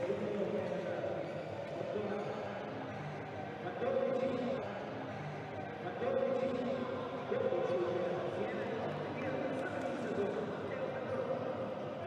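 Men's voices talking in an indoor volleyball hall, with a few sharp slaps of a volleyball being hit during a rally.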